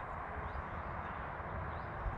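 Quiet outdoor background: a steady low rumble with a faint even hiss, with no distinct event standing out.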